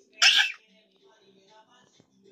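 A person's single short, breathy vocal burst, about a quarter second in.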